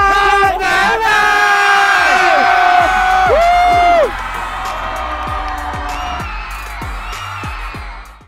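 The end of a live pop performance: loud held notes that slide down in pitch, over a cheering concert crowd. About four seconds in the music drops back, leaving a quieter held tone under the crowd noise.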